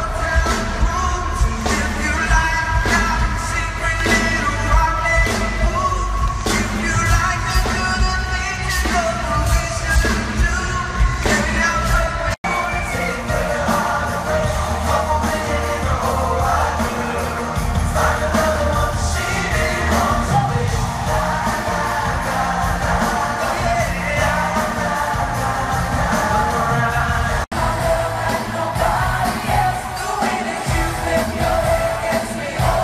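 Live pop band performance with lead singing over an amplified band, heard from among the audience in a large arena. The music breaks off for an instant twice, about 12 seconds in and near the end, at edits between songs.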